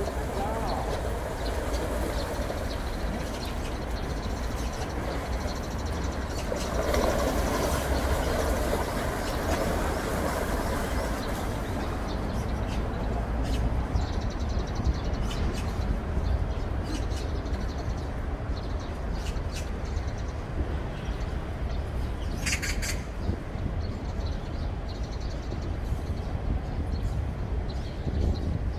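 Steady rushing of shallow stream water over stones, with a low wind rumble on the microphone; a short high chirp sounds once about two-thirds of the way through.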